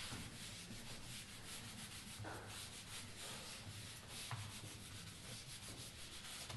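A whiteboard eraser wiping marker writing off a whiteboard in repeated quick strokes, faint.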